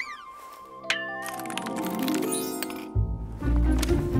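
Cartoon music score with sound effects: a sharp hit with falling whistling glides at the start, another sharp hit and a rising tone about a second in, and a dense, shimmering passage. Music with a heavy low beat comes in about three seconds in.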